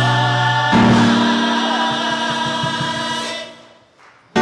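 Gospel choir singing a long held chord with instrumental accompaniment. The chord changes about a second in and then fades away near the end.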